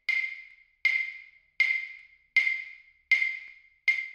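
Claves struck six times at an even pace, about one click every three-quarters of a second, moving from left to right across the stereo field. Each click trails off in a short ringing tail of room reflections: the claves are heard in an untreated control room without acoustic modules, recorded through a dummy-head microphone.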